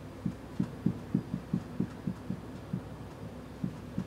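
Soft, short low thumps repeating roughly three to four times a second over a faint steady room hum.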